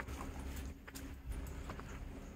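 Footsteps climbing wooden stair treads: a few sharp knocks and scuffs at an uneven walking pace, over a low rumble.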